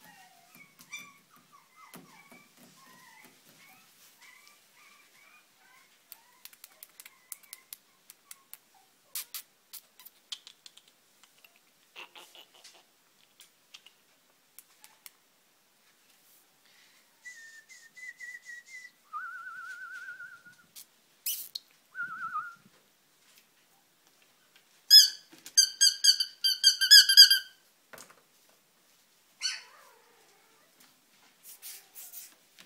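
A warbling, trilled whistle sounding in short bursts from about two-thirds of the way through, loudest in a run of fast trills near the end. In the first few seconds there are faint high whimpers from a golden retriever puppy.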